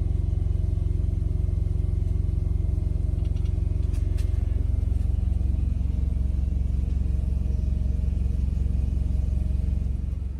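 Heavy diesel truck engine running at a steady low hum, heard from inside the truck's cab.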